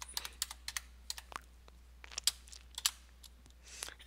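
Computer keyboard being typed on: a string of irregular single key clicks with short pauses between them, over a faint steady low hum.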